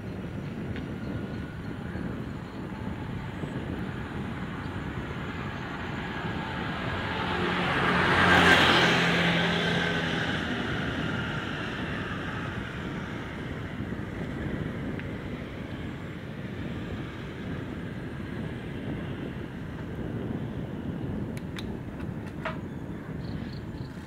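A motor vehicle passes close by about eight seconds in, its engine and tyre noise swelling over a couple of seconds and fading away more slowly. Under it runs the steady rolling and wind noise of the bicycle being ridden.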